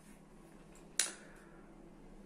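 A single sharp mouth click about a second in, trailing off into a short breath, over faint room tone.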